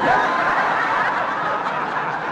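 Studio audience of a live radio comedy broadcast laughing at a joke: a dense crowd laugh that breaks out suddenly and holds steady.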